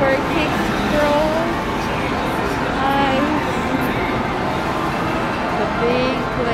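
Amusement arcade din: a steady, loud wash of game-machine sounds and music with voices mixed in.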